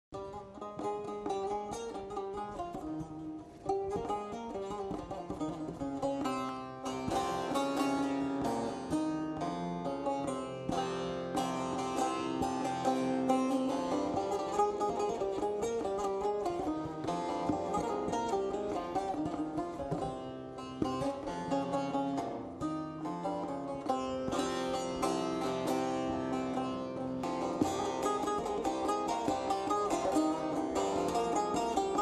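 Turkish folk instrumental music on the bağlama (saz), a run of quick plucked notes. It starts softly and gets fuller about four seconds in.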